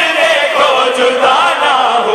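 A naat recited through a microphone: a male voice sings a devotional melody in long, gliding lines, with other voices chanting along.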